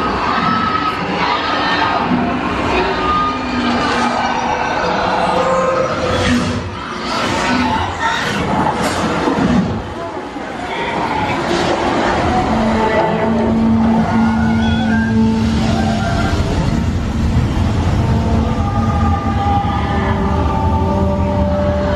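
Soundtrack of a 3D flight-simulator ride played loud in the theatre: a sweeping score with long held notes over rushing wind and whooshes. The whooshes are strongest in the first half, and the held notes take over in the second half.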